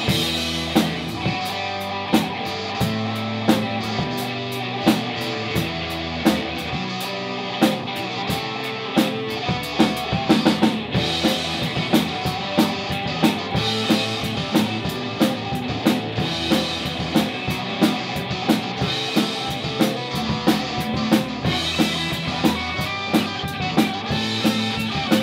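A rock band playing an instrumental jam on two amplified electric guitars, bass guitar and a drum kit, with a steady drum beat.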